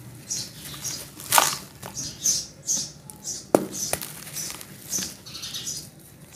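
Wet, dusty charcoal squeezed and crumbled by hand in foamy water: a run of gritty crumbling and squishing sounds, about two a second. Two sharper knocks stand out, one about a second and a half in and the loudest about three and a half seconds in.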